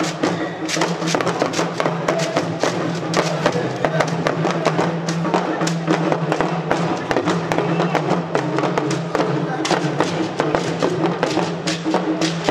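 Yoruba traditional percussion: an hourglass talking drum and beaded gourd shakers (shekere) played in a busy, continuous rhythm, with a voice over the music.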